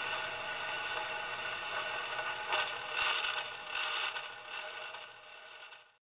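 Surface hiss and scratch of a 78 rpm shellac record on a portable phonograph, the needle still riding the disc after the song has ended, with a few louder swishes about halfway through; the sound fades out at the very end.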